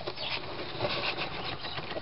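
Soft rustling and scraping of a cat shifting about in a cardboard box, with a few faint light clicks.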